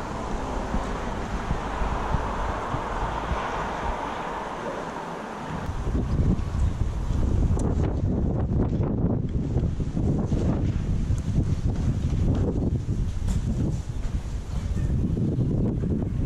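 Wind buffeting the camera microphone: a rushing hiss at first, then about six seconds in a heavy, gusting low rumble that carries on.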